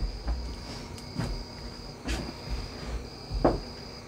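Insects chirring outdoors in a steady high-pitched tone with short breaks, with a few brief knocks and rustles close by.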